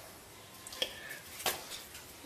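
A few faint clicks, the clearest two about 0.8 s and 1.5 s in, as a Porsche 944 Brembo brake caliper is handled and brought up to the spindle.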